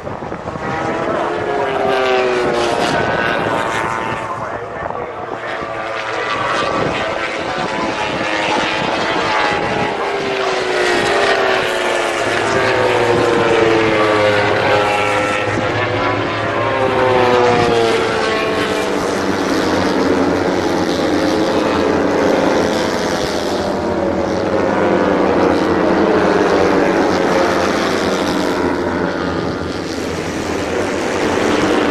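Racing motorcycle engines at high revs, several bikes passing one after another, their pitch repeatedly sliding down and climbing again through gear changes.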